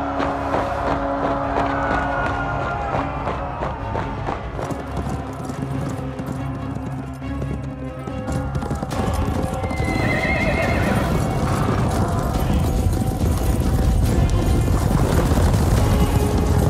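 Dramatic film music over many horses galloping, a dense run of hoofbeats, with a horse neighing. The music and hoofbeats grow louder over the last few seconds.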